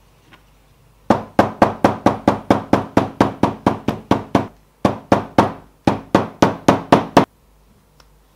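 Hammer tapping the edge of a leather bifold wallet laid on a stone slab, about four sharp strikes a second in three runs with two short breaks, flattening the glued layers before the final stitching.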